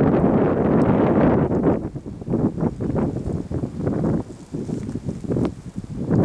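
Wind buffeting the camera microphone: a steady low rumble for about the first two seconds, then choppy gusts that come and go.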